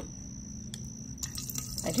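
Liquid hummingbird nectar running from a bag's dispensing spout into a glass feeder reservoir, the trickle starting about a second in.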